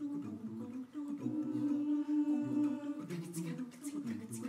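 An a cappella mixed choir humming and singing held chords in several parts over a low bass line. About three seconds in, short hissing ticks join at a steady beat.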